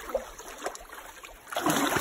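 Creek water sloshing and dripping with small irregular splashes as a fish seine net is lifted out of the water.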